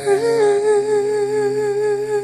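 Slow pop song: a woman's voice slides up into one long held note with vibrato, sung without words, over steady sustained backing chords.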